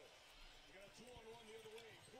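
Faint speech, a man's voice playing at low volume, typical of a basketball broadcast commentator heard under the footage.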